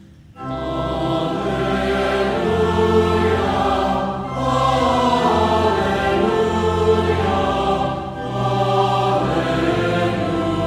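Choir singing in long sustained phrases, beginning just after a brief hush and pausing briefly about four and eight seconds in.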